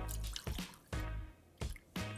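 Bourbon poured from a brass jigger into a glass tumbler: a short trickle and splash of liquid into the glass, with background music playing.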